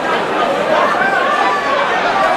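Crowd chatter in a large hall: many voices talking over one another at a steady level, with no single speaker standing out.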